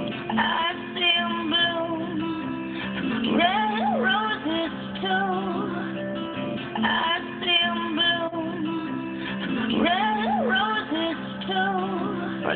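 A two-bar loop of a mixed song, strummed guitar with a sung vocal, played back over studio monitors and repeating about every six and a half seconds.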